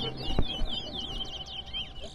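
Caged towa-towa (large-billed seed finch) singing a fast, unbroken run of quick high notes that slide up and down.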